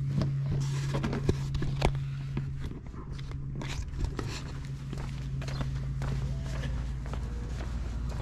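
Footsteps and scattered light knocks and clicks of someone walking through a garage, over a steady low hum that is stronger in the first couple of seconds.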